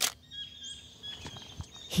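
Faint wild bird calls: a few short, thin, high chirps and a rising whistle over quiet natural ambience.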